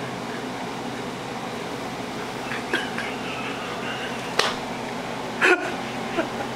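Steady mechanical hum of a household appliance in a quiet room, broken by a few brief sharp sounds, the loudest about five and a half seconds in.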